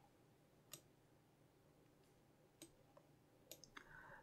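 Faint computer mouse clicks, about five, one early, then spaced out and bunched together near the end, as points are set to trace a route on a map; otherwise near silence.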